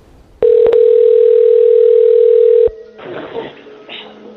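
Telephone line tone heard through a phone's narrow sound: one loud, steady beep lasting about two seconds, with a click shortly after it starts, then cut off. A faint voice follows on the line near the end.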